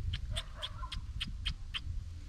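A rat held in a wire-mesh trap giving short, high-pitched squeaks, about four a second.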